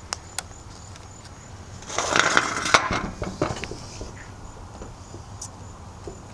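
A camera tripod being handled and adjusted: a few light clicks, then a louder stretch of rustling and knocking about two seconds in, with more scattered clicks after it.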